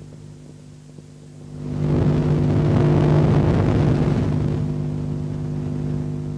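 A steady low hum, joined about two seconds in by a swelling rush of noise that is loudest around three seconds and eases off by about five.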